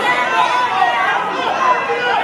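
Spectators' voices: many people talking and calling out at once, a steady babble with no single voice standing out.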